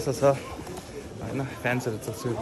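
Men's voices talking in short phrases over a low street murmur.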